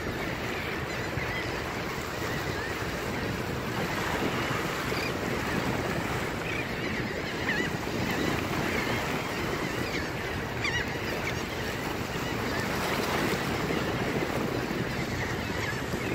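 Small waves washing against the granite blocks of a jetty, with steady wind buffeting the microphone. Faint bird calls come through here and there.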